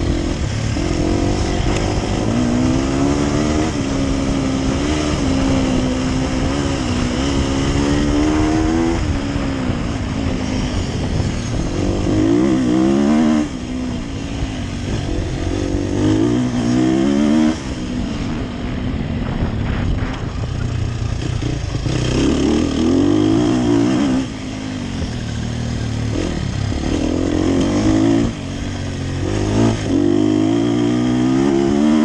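Sherco 300 SEF Factory's single-cylinder four-stroke enduro engine under hard riding, its pitch rising and falling as the throttle is opened and closed. The sound drops off suddenly four times, when the throttle is shut, before it picks up again.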